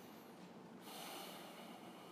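Faint room tone with a low steady hum, and about a second in a person's short, audible breath lasting about a second.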